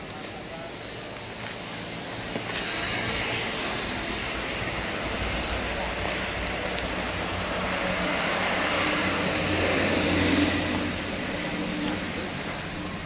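A motor passing by: a steady engine noise swells over several seconds, is loudest shortly before the end, then drops away.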